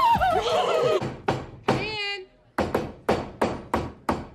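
A short bit of speech, then a hammer driving a nail into a wooden door: about five sharp blows, roughly three a second, in the second half.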